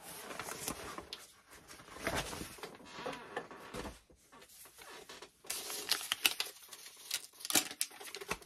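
Paper rustling and crinkling as a small folded paper slip is handled and unfolded by hand. It comes in two spells: one through the first four seconds, then a short lull, then more rustling near the end.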